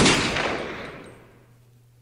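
A single pistol shot, an added sound effect, right at the start, with a long echoing tail that dies away over about a second and a half.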